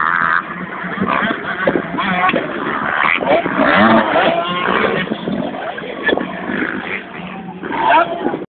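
Several motocross bikes racing on a dirt track, their engines revving hard, the pitch repeatedly rising and falling as they accelerate, shift and take the jumps.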